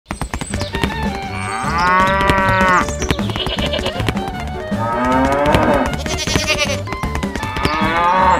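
Farm-animal sound effects: cattle mooing in three long calls, with shorter, higher livestock calls between them, over background music with a steady low beat.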